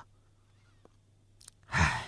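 A single breathy sigh near the end of a quiet pause, one short exhale from a voice performer.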